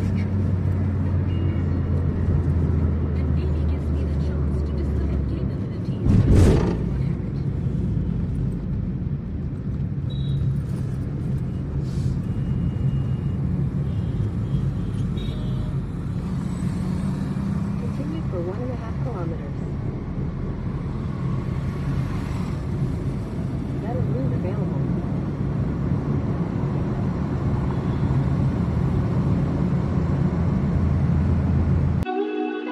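Steady road and engine rumble inside a moving car's cabin, with a single thump about six seconds in.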